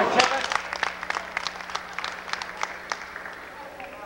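Scattered spectator applause in a school gym as a free throw is taken: many separate hand claps, loud at first and thinning out by about three seconds in.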